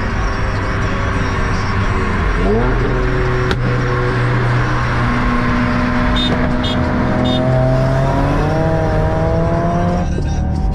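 Hyundai Genesis 4.6 V8 under hard acceleration, heard from inside the cabin over loud road and wind noise. The engine note jumps up in pitch about two and a half seconds in as the automatic kicks down, then climbs steadily toward the end.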